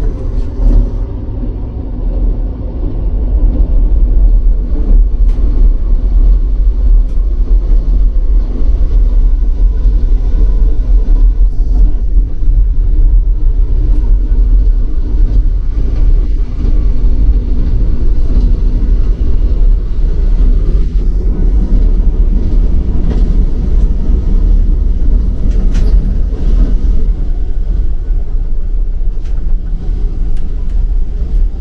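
Deep, steady rumble of an ITX-MAUM electric multiple unit running along the rails, heard inside the train. It is a little quieter for the first couple of seconds, then holds steady and loud.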